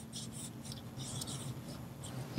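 A paintbrush scrubbing against the painting surface along a strip of artist's tape, lifting acrylic paint to erase the edge of a shutter: a quick series of faint, short scratchy strokes.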